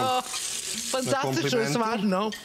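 Food sizzling in hot cookware, a brief hiss lasting under a second, followed by a voice speaking.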